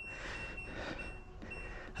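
Four short, high beeps from an LG top-loading washing machine's control panel, one per button press, roughly every half second, as the wash settings are stepped through.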